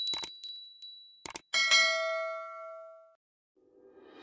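Subscribe-reminder sound effect: a small notification bell rings with quick repeated strikes, then come two quick clicks, then a single bell ding that rings on and fades out over about a second and a half.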